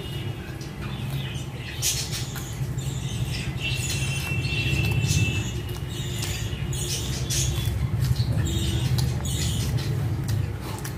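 Close-up chewing and lip-smacking while eating roti with chicken curry by hand: a run of small wet mouth clicks over a steady low hum.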